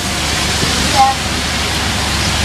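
Steady rushing background noise, with a brief short vocal sound about a second in.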